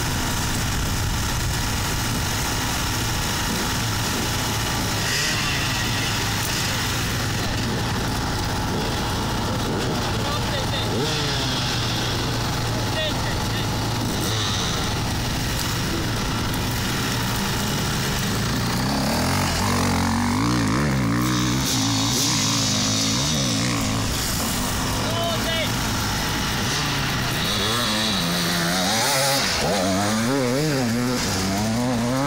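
Off-road dirt bike engine idling at the start line, then revved up and down repeatedly from about two-thirds of the way in, and again near the end.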